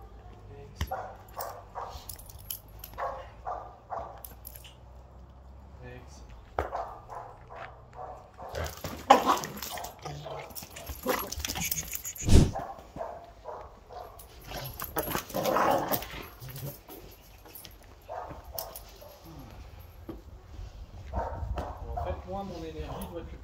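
Rottweiler barking in repeated loud bursts, loudest in the middle, reacting to being touched and handled.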